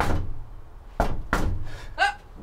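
Hand banging on a van's metal bulkhead door to the cab: sharp knocks, one at the start and two in quick succession about a second in.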